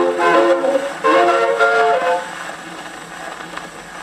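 1920s jazz band on a shellac 78 rpm record playing through a Victrola 8-9 phonograph: the horns end on a held final chord about two seconds in. After it only the needle's surface hiss and faint crackle remain.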